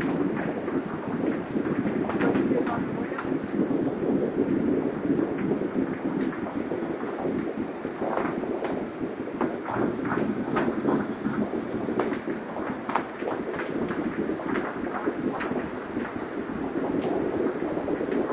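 Steady low rumble of road traffic on a busy street, with many short clicks and crunches scattered through it.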